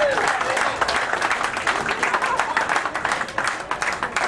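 Audience applauding, a dense patter of many hands clapping that eases off slightly toward the end.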